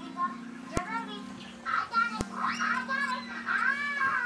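High-pitched children's voices, busiest from about two seconds in, over a steady low hum. Two sharp clicks fall in the first half.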